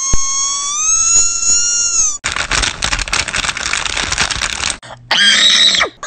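People making weird vocal noises: a high, slightly rising squeal for about two seconds, then a rough, rasping noise for about two and a half seconds, and a short shrill squeal near the end.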